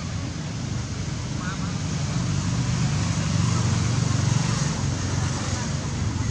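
A low engine rumble of a passing motor vehicle, growing louder to a peak about four seconds in and then easing off, with a couple of short high squeaks about one and a half seconds in.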